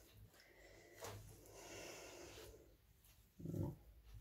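Faint rustle of hands pressing and squeezing crumbly shortbread dough on a steel worktop, with a soft tap about a second in. A short low breath-like vocal sound comes near the end.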